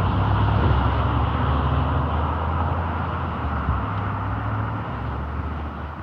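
Road traffic: a passing vehicle's low engine rumble and tyre noise, loudest at first and fading away toward the end.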